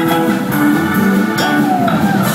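Live band playing, with electric guitar to the fore over Hammond organ, bass and drums.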